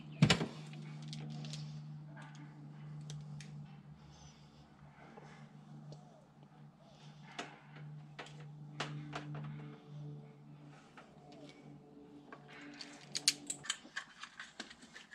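Hand crimping tool and wires being worked: scattered sharp clicks and small handling noises as connectors are crimped onto electrical wire, a cluster of clicks near the end, over a steady low hum.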